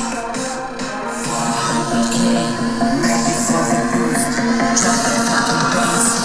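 Electronic music with a steady beat playing from a Dell XPS 15 laptop's built-in speakers as a speaker test.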